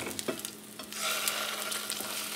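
Eggs frying in butter in a nonstick pan, with a spatula scraping and tapping under a duck egg as it is flipped. About a second in the sizzle picks up and holds steady once the egg's uncooked side is down on the pan.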